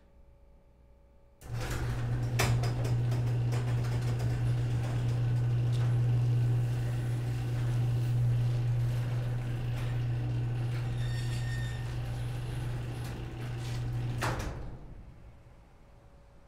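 Overhead electric garage door opener raising a sectional garage door: the motor starts about a second and a half in with a steady low hum and clicks and rattles of the door running up its tracks. It cuts off with a knock near the end.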